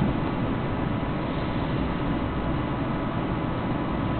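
Steady rushing noise with a low rumble from the running F-35 flight simulator, even throughout with no change in level.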